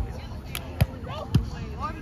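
Volleyball being struck by hands, three sharp slaps within about a second, the second and third the loudest, with players' voices faint behind.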